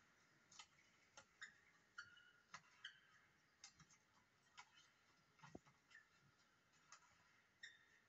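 Faint, irregular clicks of badminton rackets striking the shuttlecock during a rally, with short squeaks of court shoes, heard thinly through a TV speaker.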